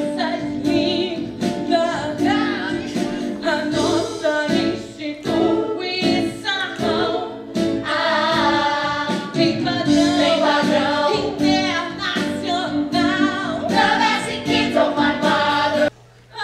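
A musical-theatre cast of men and women singing a song together over backing music with a steady beat. It cuts off suddenly at the end.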